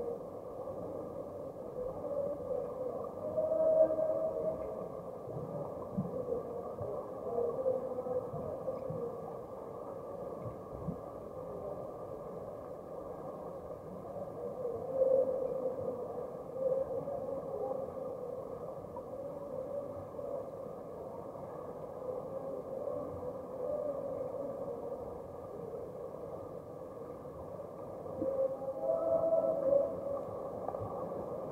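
Swimming-pool water heard underwater through a submerged camera: a muffled, steady rush with wavering tones, swelling louder three times as finned swimmers churn the water.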